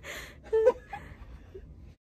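A young woman's breathy laughter with a short gasp about half a second in. The sound cuts off abruptly just before the end.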